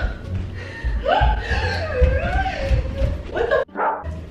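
A young woman's wordless vocal sound, drawn out for a couple of seconds and wavering up and down in pitch, like stifled laughter or a whimper, over background music.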